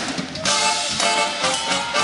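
Live band playing an instrumental funk passage: a saxophone section over electric guitar, keyboards and drum kit.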